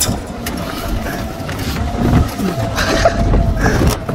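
Golf cart driving over a rough dirt trail: a continuous low rumble with several short knocks and rattles from the bumps, and a faint steady whine through the middle.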